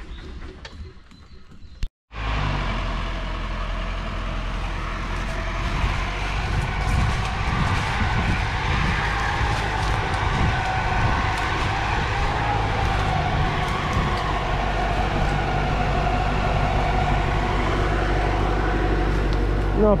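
Diesel engine of an LKT 81 Turbo forestry skidder running steadily under way. The sound cuts out briefly about two seconds in, then the engine runs on evenly.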